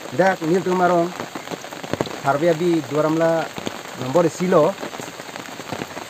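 Steady rain falling, a continuous hiss under a man's voice as he talks in three short spells.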